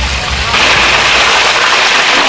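Battered fritters deep-frying in a large steel wok of hot oil: a loud, steady sizzle that swells about half a second in.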